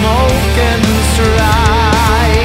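Oriental metal studio recording: a dense, loud band mix with a steady low end and regular drum hits, under a melodic lead line that wavers in wide vibrato.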